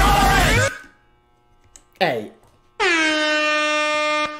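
A rap vocal over a beat stops short well under a second in. After a short silence comes a brief falling vocal sound, then, about three seconds in, a loud, steady air horn sound effect that holds to the end.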